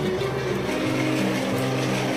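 Background music with a slow melody of held notes, over the whir of a small toy remote-control car's electric motor as it drives across the floor.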